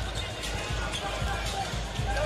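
Arena sound system playing music with a heavy bass, over basketball dribbling on a hardwood court.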